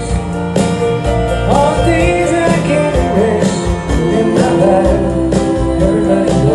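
Live band playing a country-rock song, with electric and acoustic guitars, drums and keyboards and singing over them.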